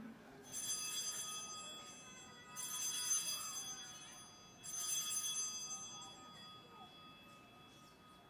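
Altar bell rung three times, about two seconds apart, each strike ringing out with a bright high tone and fading away. It marks the elevation of the chalice at the consecration.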